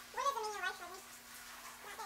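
A dog whining while being bathed: one falling, wavering cry about a second long, over the steady hiss of a running shower.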